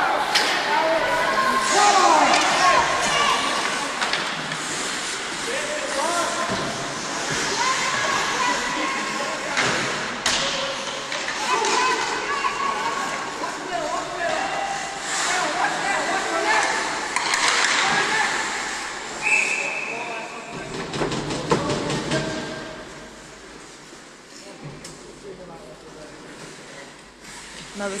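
Ice hockey play in an indoor rink: players and spectators shouting, with sticks and puck knocking and thudding against the ice and boards. A short steady high tone sounds about nineteen seconds in, and the rink goes quieter for the last few seconds.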